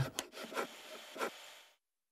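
A few faint scraping strokes on wood, a cartoon work sound effect, fading out a little after halfway through and followed by silence.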